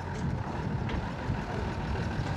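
Steady rumble of a diesel engine running on an armoured military troop carrier.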